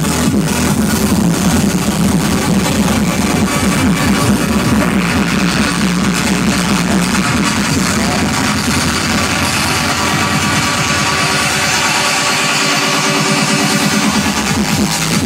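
Loud electronic dance music from a DJ set over a festival sound system, recorded from among the crowd. The beat and deep bass fall away through the second half, leaving sustained synth tones.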